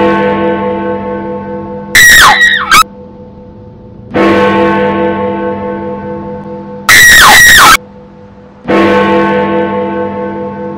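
A looped sound effect: a bell strikes and rings out, fading over about two seconds, then a short scream at full volume follows. The pair repeats about every four and a half seconds, with a faint steady hum beneath.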